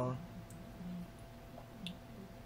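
Quiet room tone with a faint steady hum, broken by two small clicks: a faint one about half a second in and a sharper one just before the end.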